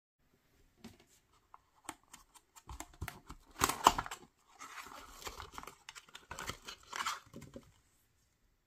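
Small cardboard box being torn open by hand: scattered light clicks and scrapes, then tearing with the loudest rip about four seconds in, and another spell of tearing and rubbing cardboard around seven seconds.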